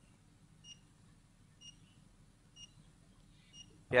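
Four short, faint, high electronic beeps about a second apart over a low steady hum.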